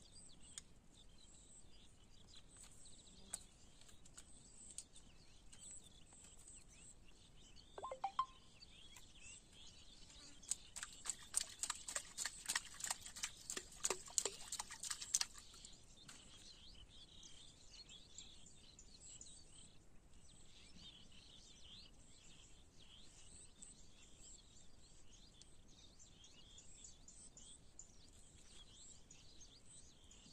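Faint steady high-pitched insect chirring. About halfway through, a flurry of sharp clicks or chirps lasts about five seconds, and a brief call comes a little before it.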